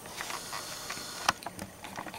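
A few faint, irregularly spaced clicks over a steady low hiss: camera handling noise while the shot zooms in.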